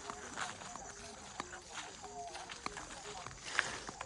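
Footsteps of people walking along a dirt path through tall grass: irregular soft steps, with one sharper step near the end, over faint short pitched sounds in the background.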